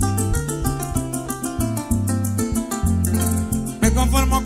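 Venezuelan llanera harp and cuatro playing a lively joropo instrumental introduction, with the harp's low strings carrying the bass line and a fast, even rattle on top.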